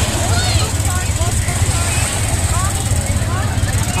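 A rear-engined business jet on low final approach, its engines making a steady rumbling roar, mixed with wind buffeting the microphone. Scattered voices of a crowd are heard underneath.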